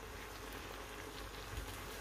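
Faint, even sizzling of stir-fried noodles and vegetables frying in a wok as they are stirred with a spatula.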